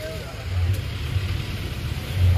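Low, steady rumble with faint voices of several people in the background.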